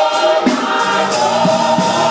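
Gospel choir singing in harmony, many voices holding long sustained chords.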